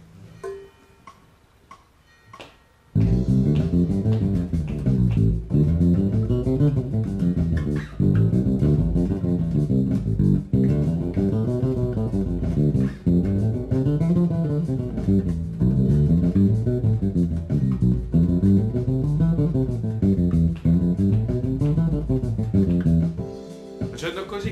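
Fender Jazz Bass electric bass playing scales in steady runs up and down, over a looping backing track. It comes in loud about three seconds in, after a few faint notes.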